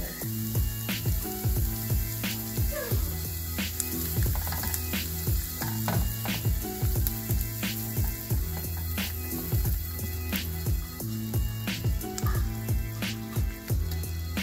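Butter melting and sizzling with chopped onion and garlic in a nonstick frying pan, stirred now and then with a silicone spatula. Background music with a steady drum beat plays over it.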